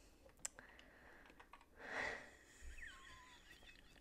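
Faint, sparse clicks of LEGO plastic pieces being handled and pressed by fingers, one sharper click about half a second in, with a soft rush of noise about halfway through.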